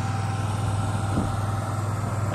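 Ford F-550's 6.7-litre turbo-diesel engine idling steadily, with an even low pulse.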